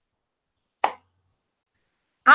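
A single brief pop a little under a second in, otherwise dead silence.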